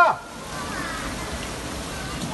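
Steady rush of heavy rain and fast floodwater pouring through a flooded street.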